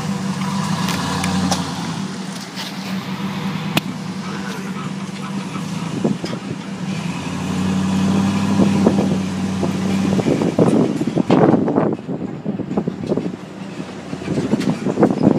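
A motor vehicle engine running with a steady low hum, then irregular buffeting noise over the last few seconds.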